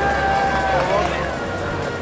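Background music: a long held melody note that slides down about a second in, over a moving bass line.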